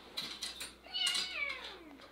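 A house pet's single long call, gliding steadily down in pitch through the second half, preceded by a few light clicks.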